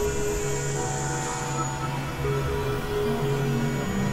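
Experimental synthesizer drone music: layered held tones over a noisy low rumble. New held notes come in just under a second in, and a high hiss fades out about a second and a half in.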